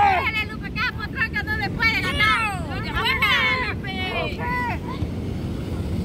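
Excited voices shouting in high, rising and falling calls over a steady low rumble.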